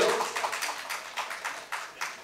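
A pause in a man's speech, filled with room noise and many faint, scattered clicks or taps.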